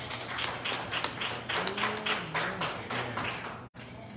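Quick hand clapping, a run of sharp claps at about five a second.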